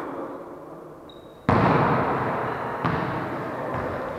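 A volleyball struck hard by hand, the hit echoing through a gym about a second and a half in, followed by two softer hits over the next two seconds as the rally goes on.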